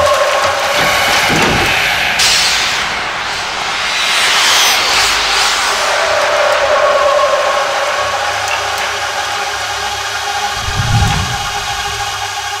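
Horror soundtrack of sound effects and score: a rushing, wind-like whoosh sweeps up and down over a sustained droning tone, and a low thud comes near the end.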